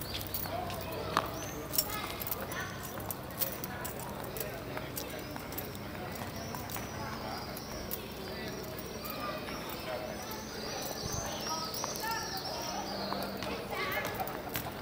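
Indistinct voices of people talking in an open stone-paved square, with scattered sharp clicks of footsteps on the stone paving.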